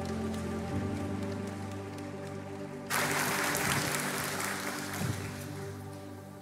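A held synth-pad chord from the worship band, changing chord early on. About three seconds in, the congregation breaks into applause, which lasts about three seconds while the pad keeps sounding.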